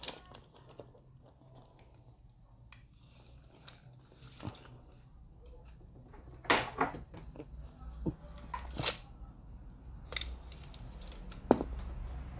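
Handling noise from a pocket tape measure and a thin cable: scattered light clicks and rustles, then a few louder sharp clacks in the second half.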